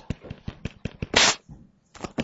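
Pen stylus tapping and scratching on a tablet screen while letters are handwritten: a quick run of sharp little clicks, with one short louder scratchy rush just over a second in.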